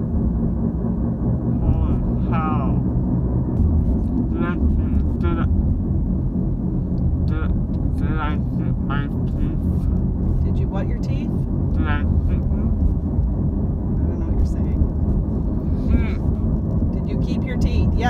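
Steady low road and engine rumble inside a moving car's cabin. A young man's voice comes over it in short phrases every few seconds.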